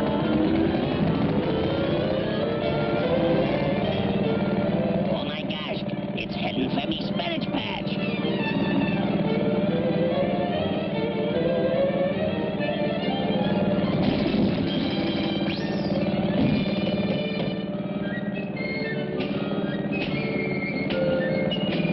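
Cartoon background music over a steady low motor drone from a power lawnmower sound effect, with a rapid flurry of clicks and knocks about five to eight seconds in and a few more knocks later on.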